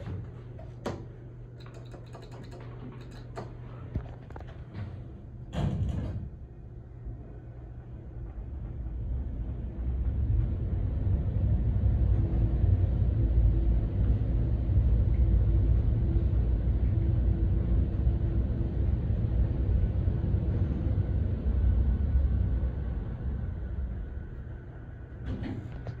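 Elevator doors closing with a few clicks and a knock, then a 900 ft/min Otis traction elevator car travelling up its shaft: a low rumble builds after about eight seconds, holds steady through the fast run and eases off near the end as the car slows.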